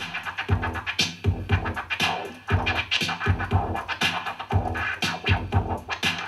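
Turntable scratching: a vinyl record worked back and forth by hand in short, rhythmic cuts over a beat with a regular low thump about twice a second.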